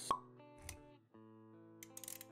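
Intro sound effects over soft background music: a sharp pop right at the start, then a softer knock with a low thud a little after, while held synth-like notes sound underneath.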